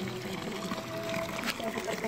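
Water pouring from a pipe into a pool, a steady splashing trickle.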